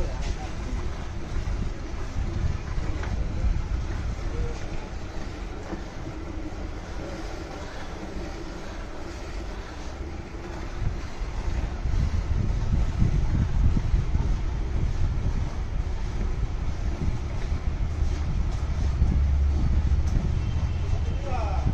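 Hand milking: streams of milk squirting from the teats into a steel pail, under a low rumble of wind and handling noise on the microphone that grows louder in the second half.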